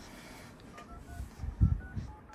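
Phone dialer keypad tones: a quick run of about eight short key beeps as digits are tapped into the freshly repaired phone's keypad to test the replaced display. A dull thump comes partway through.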